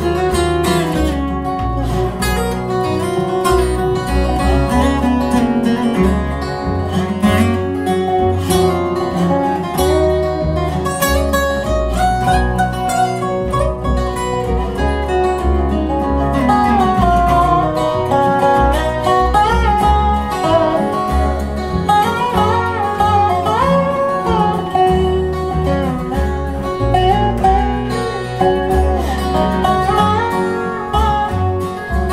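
Acoustic bluegrass band of two acoustic guitars, upright bass and dobro playing an instrumental break, with the bass walking beneath the melody lines.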